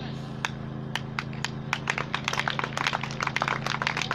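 Scattered hand claps, a few at first and then coming faster and more irregular, over a steady low hum.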